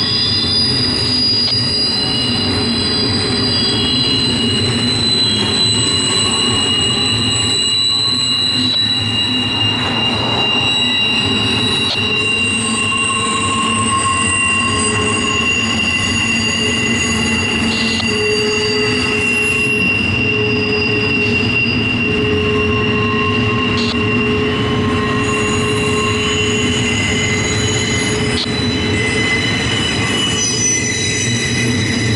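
A CSX freight train's double-stack intermodal well cars rolling steadily past, with a loud, continuous rumble of steel wheels on rail. Several long, high-pitched wheel squeals rise and fade over it.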